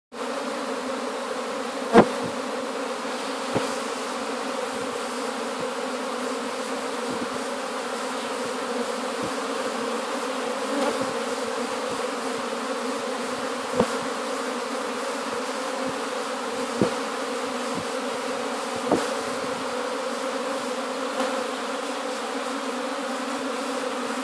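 Honeybee swarm issuing from a hive: a dense, steady hum of many bees in flight around the hive entrance. A few sharp clicks stand out over the hum, the loudest about two seconds in.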